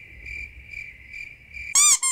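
Crickets sound effect, the comedy 'awkward silence' gag: a steady high chirring pulsing about twice a second. Near the end it is cut off by a short, loud sweep that falls in pitch.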